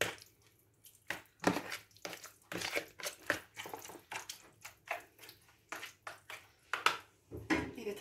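A utensil stirring grated zucchini and carrot through thick yogurt in a large bowl: irregular wet squelches and light knocks against the bowl, a few each second.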